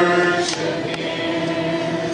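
A congregation singing a gospel worship chorus with a male song leader, holding one long note at the end of a line that slowly fades.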